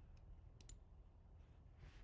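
Near silence with a faint computer mouse click about two-thirds of a second in, preceded by a softer tick.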